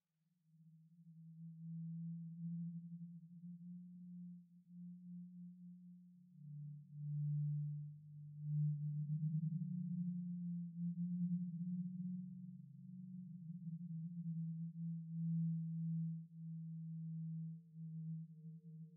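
Low, sustained electronic tones fading in from silence, pulsing and wavering in loudness; a second, lower tone joins about six seconds in, and fainter higher tones come in near the end.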